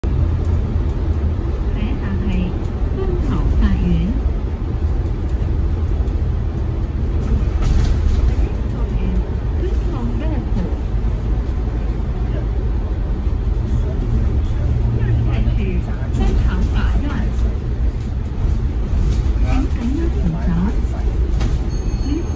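Steady low rumble inside a moving bus's cabin, with the bus's recorded on-board voice announcing the next stop, Kwun Tong Law Courts, and asking passengers to hold the handrail in Cantonese, English and Mandarin.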